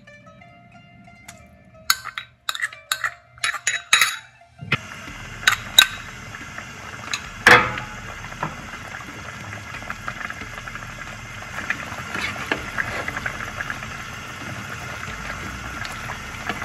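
A metal spoon clinks repeatedly against a pot or container as ghee is spooned in. About five seconds in, a steady bubbling hiss of the curry cooking in the pan starts abruptly and continues, with a few more clinks over it.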